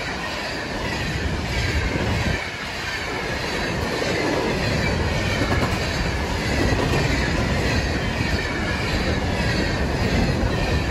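Loaded coal hopper cars of a freight train rolling past close by: a steady rumble of steel wheels on the rails, with a faint high wheel squeal over it.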